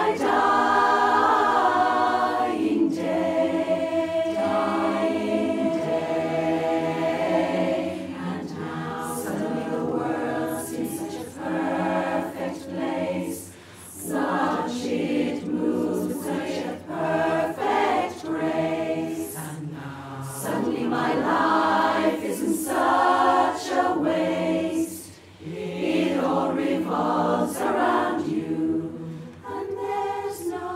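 Women's barbershop chorus singing a cappella in close four-part harmony, with short breaths between phrases about 13 and 25 seconds in.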